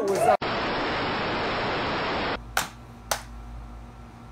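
Music with singing cuts off and gives way to about two seconds of steady, even hiss like static, which stops abruptly. Then come two sharp clicks about half a second apart over a faint low hum.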